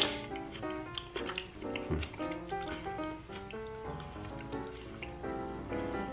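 Light background music made of short plucked notes, one after another.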